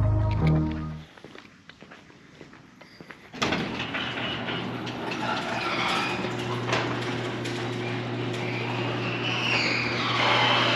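Background music ends about a second in. After a quiet stretch, a garage door opener starts a little over three seconds in: a steady motor hum with scattered clicks as the sectional door rolls up.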